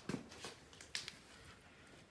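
A few faint, short clicks and rustles in the first second, then low room noise.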